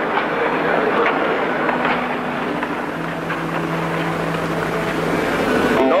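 Crowd of many voices murmuring together in a dense, steady hubbub, with a faint low held tone under it.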